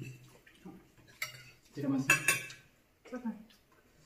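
Forks and spoons clinking and scraping on plates as people eat, with short snatches of voice about two and three seconds in.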